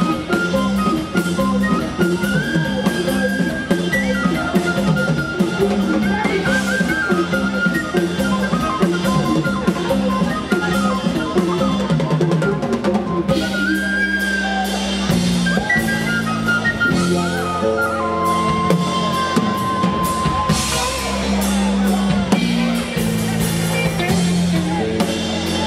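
A Celtic folk-rock band playing live: a whistle melody over electric guitar, bass and a drum kit.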